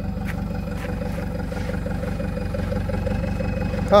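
An engine idling steadily, with an even low pulsing drone and a few faint ticks.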